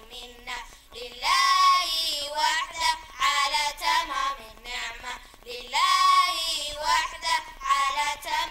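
A high voice singing an unaccompanied melody in phrases a second or two long, the pitch sliding up into each phrase.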